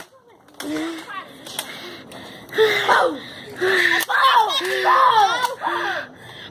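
Children's voices talking and calling out, the words indistinct, with a few short clicks.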